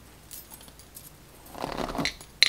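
Pearl and beaded bracelets clinking on a wrist as a hand works through a doll head's tangled synthetic hair. There are a few faint clicks at first, then a louder burst of clinking and hair rustle in the last half second.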